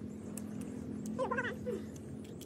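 A cat meowing once, a wavering, drawn-out call about a second in, over a steady low hum.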